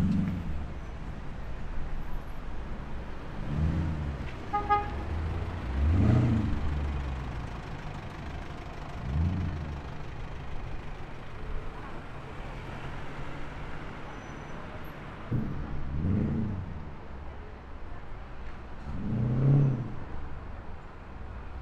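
City street traffic: several cars accelerating past, each a low engine surge that rises and fades, the loudest near the end. A short horn toot sounds about five seconds in.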